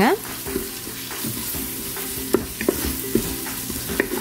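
Onion-tomato masala sizzling in the oil and ghee of an Instant Pot's stainless steel inner pot as it is stirred with a wooden spatula. A steady hiss runs throughout, with a few short taps and scrapes of the spatula against the pot.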